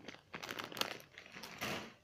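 Crinkling of a plastic snack bag of popcorn being handled and set down: a run of rustles that stops just before the end.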